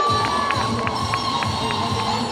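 Dance music playing: one long held note over a steady beat of about three strokes a second.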